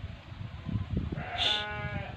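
A single drawn-out bleat from livestock, starting a little past halfway and lasting about a second at a steady pitch, with low thumps before it.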